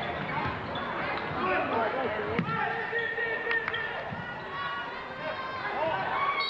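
Basketball game sound in a school gymnasium: crowd chatter and shouting voices over the court, with a basketball bouncing on the hardwood floor and a sharp knock about two and a half seconds in.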